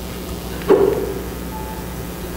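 Steady low hum of room noise, broken about two-thirds of a second in by a short, louder sound that fades within half a second.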